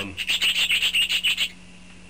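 Budgerigars chattering: a quick run of short, scratchy chirps, about nine a second, for a second and a half, then stopping.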